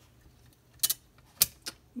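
Hard plastic clicks and taps from handling a plastic transformable robot figure: three short clicks in a little under a second, the middle one the loudest.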